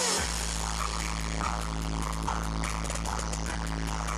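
Electronic dance music from a live DJ set played loud over a sound system, with a heavy, continuous bass. The bass cuts out briefly and comes back in right at the start, followed by repeating mid-range synth stabs.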